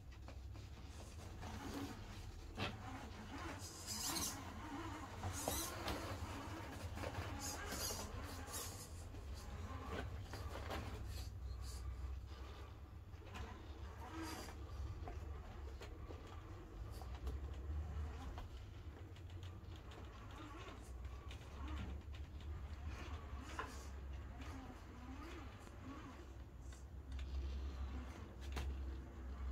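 Radio-controlled scale crawler climbing a ramp of wooden sticks: a quiet electric motor and gear whine, with scattered clicks and knocks of tyres on wood that come thickest in the first third, over a steady low rumble.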